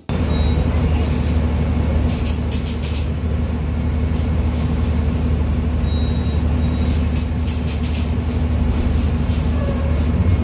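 Mercedes-Benz O-500U city bus's Bluetec 5 diesel engine running at a steady low drone, with light clicks and rattles over it at times.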